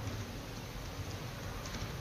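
A steady hiss with a low hum underneath and no distinct events: the background noise of the audio feed.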